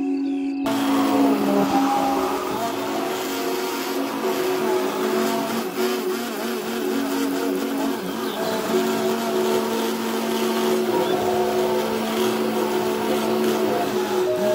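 Handheld immersion blender motor running steadily, switched on about half a second in, blending yogurt and water into lassi in a tall plastic beaker. Soft background music plays underneath.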